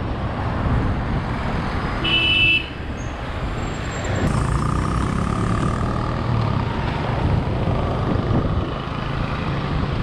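Ride on a motor scooter: its small engine running under steady road and wind noise on the microphone, with a short horn toot about two seconds in.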